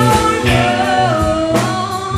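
Live band playing a slow blues ballad: a female singer holding and sliding a sung line over electric guitar, bass guitar and a drum kit, with a drum hit about once a second.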